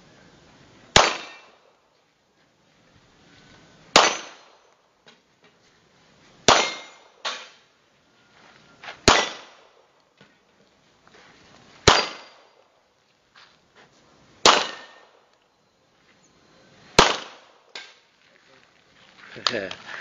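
Handgun fired single shots at a slow, steady pace, seven in all, about every two and a half seconds, each a sharp loud crack with a short ringing tail. A few fainter knocks fall between the shots.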